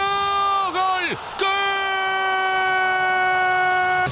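Spanish-language football commentator's long shouted goal cry, "gooool", held on one steady pitch. It comes as a shorter first call that breaks off about a second in, then, after a brief breath, a longer second call.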